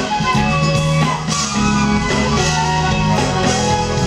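Live smooth-jazz band playing, with a flute carrying the melody over a bass line and drums.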